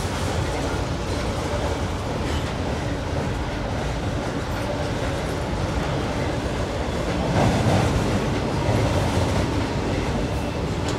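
Double-stack container well cars rolling across a short steel girder bridge overhead: a steady rumble and clatter of wheels on rail, swelling briefly about seven and a half seconds in.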